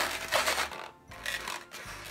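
Inflated latex twisting balloon (a 260) rubbing and squeaking under the fingers as its bubbles are pressed and tucked into place. The sound is loudest in the first second, then drops to a few quieter rubs.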